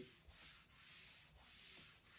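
Felt chalkboard eraser wiping across a chalkboard in about three faint back-and-forth strokes.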